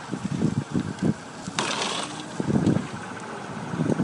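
Car fire heard close up: the flames burn with an irregular low rumbling, and a brief hiss comes about one and a half seconds in.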